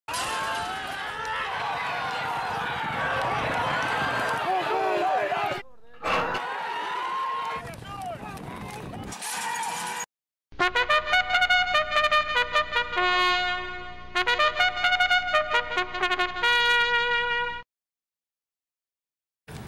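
Voices shouting over a noisy background for about the first ten seconds, breaking off briefly twice. Then a brass trumpet fanfare of quick, punchy notes plays for about seven seconds and stops abruptly.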